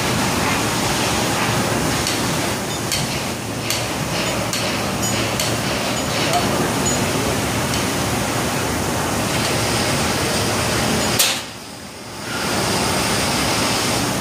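A hydraulic ram's pump runs with a steady hiss while pressing a steel pin into a brace connection, with a few sharp metal clicks. About 11 seconds in there is a sharp click, the noise cuts out for about a second, and then it starts up again.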